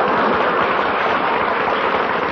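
Studio audience laughing and applauding after a punchline, a dense steady crowd noise on an old radio broadcast recording.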